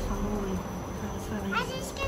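Steady high-pitched trill of crickets in the evening woods, with a low hum under it. About one and a half seconds in, a short rising voice-like sound cuts across it.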